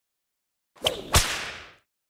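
An intro whip-crack and whoosh sound effect: two sharp cracks about a third of a second apart, the second louder, trailing off over about half a second.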